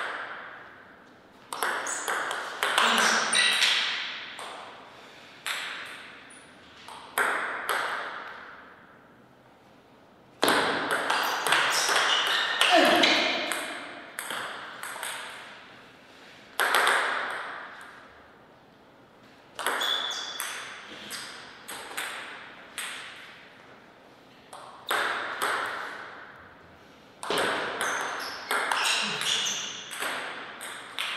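Table tennis rallies: the celluloid-type ball clicking off rubber-covered bats and bouncing on the table, in several quick runs of hits with short pauses between points. Each click trails off in the hall's echo.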